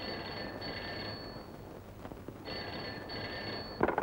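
Desk telephone ringing twice, each ring lasting about a second and a half with a pause between. It ends in a short clunk near the end as the handset is picked up.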